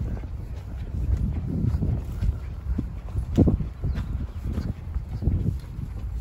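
Footsteps of a person walking on dry dirt and grass: a string of uneven soft thuds, the firmest about halfway through, over a steady low rumble.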